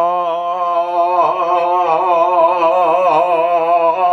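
A man singing one long held note with a wide, wobbling vibrato, the pitch shifting slightly about a second in.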